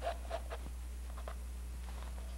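A charcoal stick scratching on canvas in a few short, faint strokes over a steady low hum: lines being sketched.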